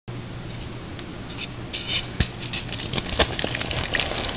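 Reformed chalk crushed by hand in water in a glass dish: wet crackling and crunching, with a few sharp knocks against the glass. It starts about a second and a half in, after a low steady hum.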